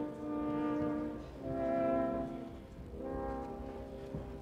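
Opera orchestra playing three long held chords, one after another, each steady and without vibrato.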